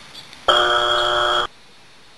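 A flat, steady buzzer sound effect lasting about one second. It starts abruptly about half a second in and cuts off suddenly.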